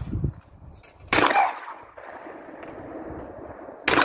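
Two shotgun shots at a thrown clay target: a sharp report about a second in that trails off over about a second, then a second report near the end.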